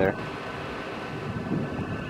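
Steady outdoor background noise with wind on the microphone and a faint, steady high-pitched whine running under it.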